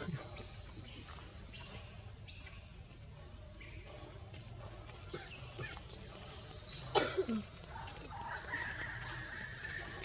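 Forest background: short high bird chirps every second or so, a steady high buzz from about six seconds in and again near the end, and a sharp sound with a brief falling call about seven seconds in, the loudest moment.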